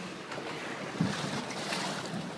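Wind and choppy sea water around a small RIB boat, with wind buffeting the microphone and a brief louder bump about a second in.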